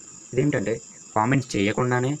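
A man speaking in two short phrases, over a thin, steady high-pitched whine that never stops.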